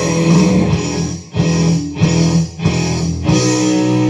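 Rock music with electric guitar, broken by two brief dips in the middle.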